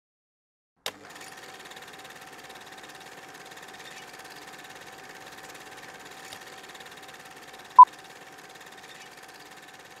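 Old-film countdown effect: after a click about a second in, a steady, faint film-projector running noise with a low hum, and one short, loud beep about eight seconds in marking the countdown.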